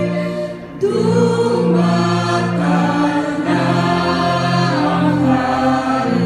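A woman on a microphone leads a congregation singing a slow Tagalog Christmas hymn, the voices held long over sustained musical backing. There is a short break between phrases about half a second in.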